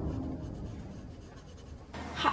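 A hand tool scratching on a wooden board in short repeated strokes, as the man marks or draws on the wood, while background music fades out at the start.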